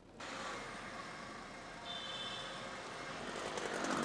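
Steady outdoor street noise of road traffic, swelling near the end as a vehicle draws closer, with a brief faint high tone about halfway through.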